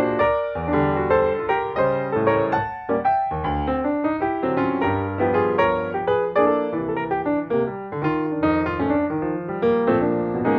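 Background piano music, a continuous flowing run of notes.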